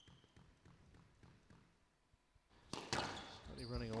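Faint knocks of a squash rally: the ball struck by rackets and hitting the court walls, with players' footsteps on the court floor. A louder knock comes near the end.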